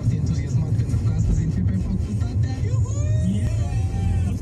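Car interior rumble from the engine and tyres while driving slowly, heard inside the cabin, with a radio playing faintly underneath.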